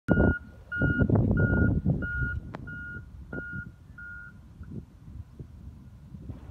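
An electronic beeper sounding one high beep over and over, about every two thirds of a second, fading and stopping after about four seconds, over a loud low rumble in the first two seconds.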